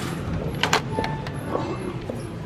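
Store background noise: a steady low hum with a few sharp clicks, the loudest about a third of the way in.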